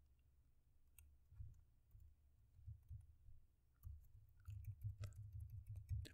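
Faint computer keyboard typing: scattered, irregular key clicks over a low rumble.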